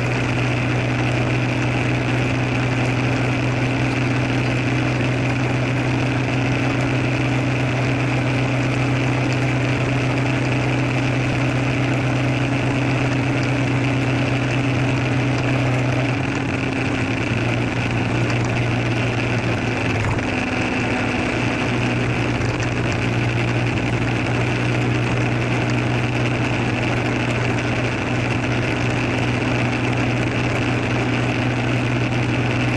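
Motor scooter engine running steadily under way, a constant low drone. About halfway through its note wavers for a few seconds, then settles again.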